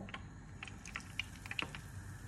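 Faint, irregular crackling of hot peanut oil around an egg-dipped anchovy fillet just laid in the frying pan: a few scattered pops and ticks rather than a full sizzle.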